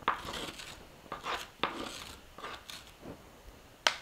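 Metal spoon scraping seeds and stringy pulp from inside raw spaghetti squash rings: a run of short rasping scrapes. Near the end comes one sharp tap as the spoon knocks against the bowl.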